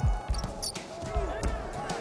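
A basketball being dribbled on a hardwood court: a few low bounces.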